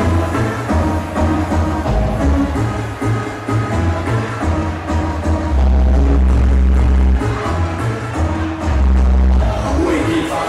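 Loud electronic dance music played by DJs over a PA sound system, with heavy bass. A long held low bass note comes about halfway through, and a shorter one comes near the end.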